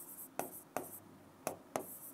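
Marker pen writing on a board: a run of short sharp taps and scratchy strokes as letters are written.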